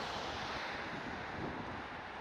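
Steady outdoor city street ambience: an even rushing noise of traffic and wind.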